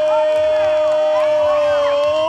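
A commentator's long drawn-out shout of "gol", held on one pitch and dipping slightly near the end, over spectators and children cheering and shouting.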